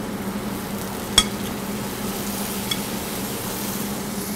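White beans and diced onion, carrot and celery sizzling gently in a stainless sauté pan on a gas burner while being stirred, over a steady low hum. A sharp metal clink of the utensil against the pan comes about a second in, and a lighter tick near the end.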